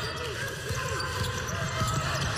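Basketball dribbled on a hardwood court in an arena, with faint voices in the background.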